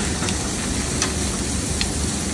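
Thick bone-in ribeye steaks sizzling steadily on a hot flaming grill, with a few sharp pops and clicks.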